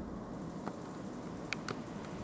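Quiet room tone with a few faint light clicks: one early and two close together near the end.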